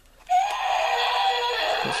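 Battery-operated toy dinosaur's built-in speaker playing a recorded roar, starting a fraction of a second in and lasting about a second and a half.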